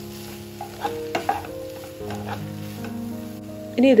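Wooden spatula stirring and scraping a potato and shredded-chicken cutlet filling as it fries in a nonstick pan, with a few sharp scrapes and taps against the pan.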